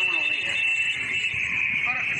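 A steady high-pitched whine over men's voices talking.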